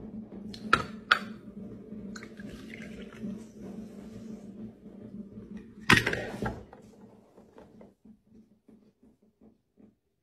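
Liquid pouring from a glass jar into a small plastic cup, with a couple of light clinks early on, then a loud knock as the glass is set down on the table about six seconds in. After that, only faint small clinks and handling sounds.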